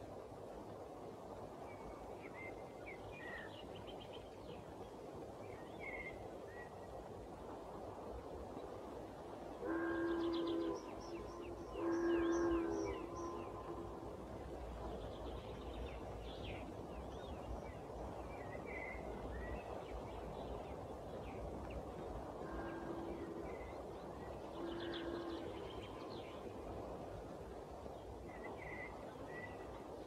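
Quiet outdoor evening ambience with a steady low rumble and faint scattered chirping. A distant horn sounds two long blasts about ten seconds in, then two fainter blasts later on.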